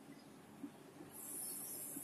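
Faint scratching of a pen writing on paper, starting about a second in and running steadily.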